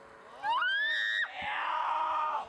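A high-pitched shriek that glides sharply upward about half a second in, holds, then breaks off, followed by a lower, wavering cry.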